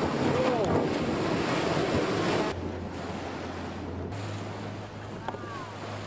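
Open-sea ambience: wind buffeting the microphone and water rushing and splashing as a humpback whale breaks the surface, loudest for the first two and a half seconds. After that it drops off suddenly to quieter wind and waves over a low steady hum.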